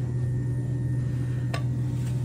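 Electric pottery wheel motor humming steadily as the wheel turns, with a single sharp click about one and a half seconds in.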